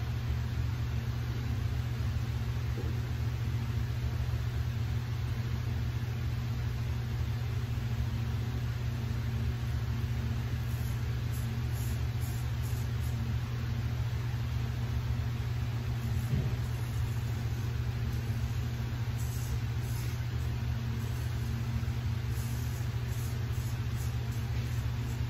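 A steady low hum fills the room, and from about halfway on a Dovo Bergischer Lowe straight razor scrapes faintly through a day's stubble in short strokes.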